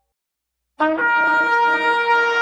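Silence, then about a second in a loud horn blast begins suddenly: one long, steady trumpet-like note, full of overtones.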